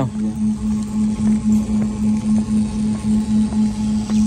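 Paddlewheel aerator on a shrimp pond running: a steady low mechanical hum that pulses evenly about two to three times a second.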